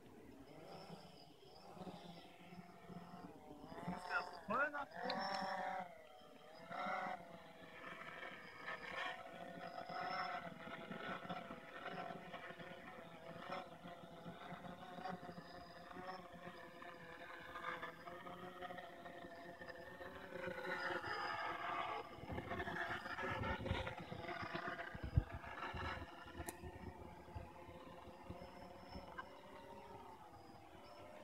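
Blade 350 QX2 quadcopter's four brushless motors and propellers buzzing. The pitch climbs as it lifts off a few seconds in, then rises and falls with the throttle as it flies. About two-thirds through, a stretch of low rumbling comes in, with one sharp knock in it.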